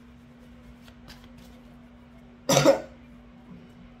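A single short cough a little past halfway through, over a faint steady hum in a quiet room.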